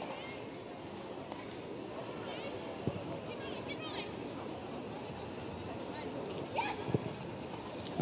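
Football stadium ambience from the pitch microphones: a low, steady murmur from the small crowd with faint distant shouts, and two sharp knocks of the ball being kicked, about four seconds apart.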